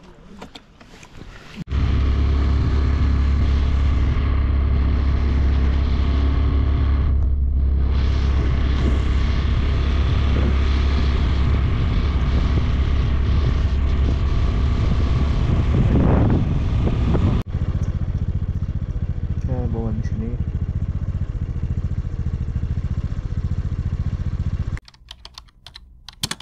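Motorcycle engine running as the bike is ridden along, with wind rushing over the microphone. It starts about two seconds in, changes abruptly at a cut about seventeen seconds in, and stops shortly before the end.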